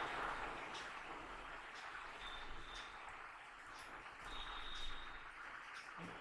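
Low steady hiss of microphone room noise with a few faint computer-keyboard key clicks as a word is typed.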